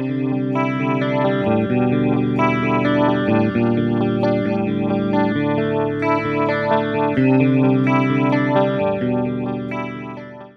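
Electric guitar played through a Fender Mirror Image Delay pedal, its repeats carrying each note on so that the notes overlap and ring into one another. The playing fades out at the end.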